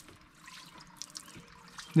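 Faint, steady trickle of water falling through the holes of a plastic children's water table's raised tray into the water below, with a few small drips.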